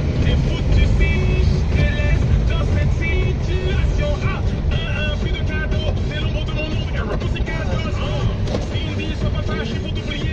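Steady low rumble of a car's engine and tyres heard from inside the cabin in slow traffic, with music and a voice playing over it.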